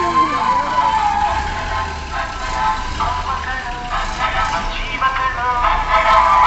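Slow-moving vehicle engines running, with an emergency vehicle's electronic siren falling away in the first second or so. Music plays underneath.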